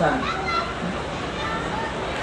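A man's voice ends a word right at the start, then faint children's voices and chatter carry on in the background through the pause.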